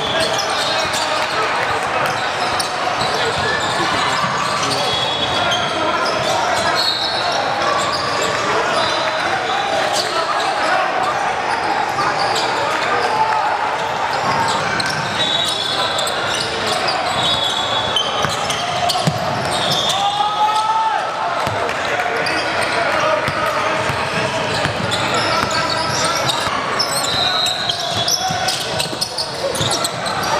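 Live sound of an indoor basketball game echoing in a large gym: a ball dribbling, short high sneaker squeaks on the hardwood, and steady chatter and calls from players and spectators.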